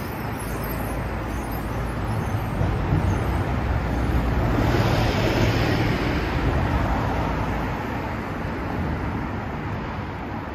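City road traffic passing: the tyre and engine noise of cars and a double-decker bus swells to its loudest about five seconds in, then eases off. A deep engine rumble runs underneath until about eight seconds in.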